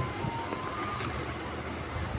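Low steady rumble of a handheld phone's microphone being moved about, with a brief rustle of cloth about a second in as clothes are handled.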